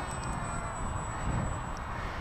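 Small foam flying wing's electric motor and 6x4 propeller buzzing faintly in the distance, under wind noise on the microphone.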